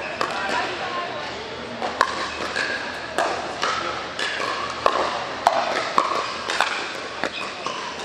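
Pickleball paddles striking a hard plastic ball in a rally, a string of sharp pops about one every half second to second, in a large indoor hall.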